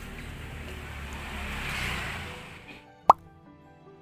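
A noisy room ambience swells and fades, then a single sharp, loud pop sound effect comes about three seconds in. Soft background music with held notes follows it.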